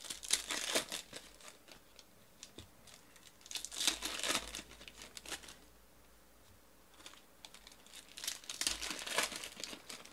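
Foil trading-card pack wrappers crinkling and tearing as packs are ripped open by hand, with cards being handled, in a few bursts of a second or so separated by quiet gaps.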